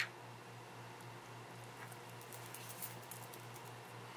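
Faint rustling and small ticks from a beading needle and thread being worked through seed beads between the fingers, over a low steady hum; the ticks cluster a little past the middle.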